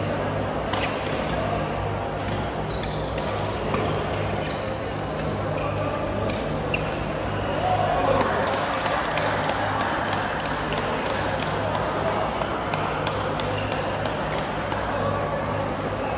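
Busy indoor badminton hall: a din of many voices, with scattered sharp racket-on-shuttlecock hits and shoe squeaks from the courts, over a steady low hum.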